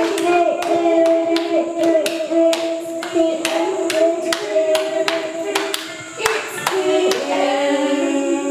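A child singing held notes into a corded microphone, with hands clapping along in a steady beat of about two claps a second.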